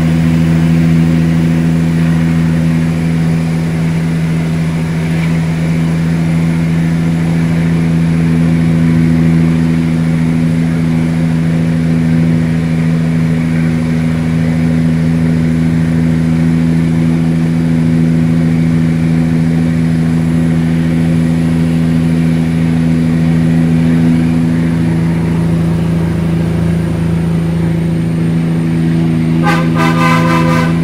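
Caterpillar 3406E inline-six diesel of a Peterbilt 379 running steadily under way, heard inside the cab, holding an even pitch. A horn sounds near the end.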